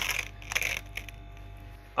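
Brief rustling and crackling from ventilation filters being handled, mostly in the first half-second or so, followed by faint steady tones.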